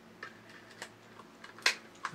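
Light handling clicks and taps of hard plastic toy-robot parts and a small screwdriver, a few scattered ones with the sharpest about one and a half seconds in.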